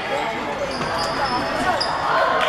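Basketball game in a sports hall: players' and onlookers' voices, with a few brief high sneaker squeaks on the wooden court about halfway through and near the end, and a ball bouncing.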